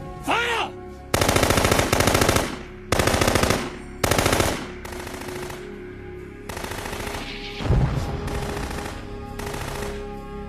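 Automatic gunfire from a film battle soundtrack: several long, rapid bursts in the first half, then a heavy low thump near the end, over a steady music drone.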